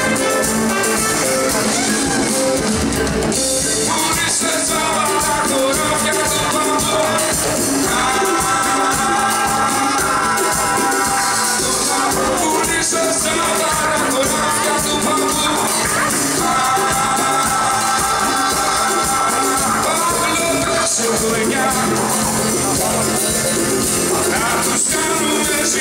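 Live band music: strummed acoustic guitar with a trumpet, and long held melody notes in two phrases.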